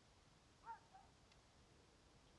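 Near silence, broken by one short, faint animal call that rises and falls, about two-thirds of a second in, followed by a softer, lower note.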